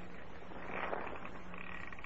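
A safe's combination dial being turned: a faint, rasping run of clicks, played as a radio sound effect.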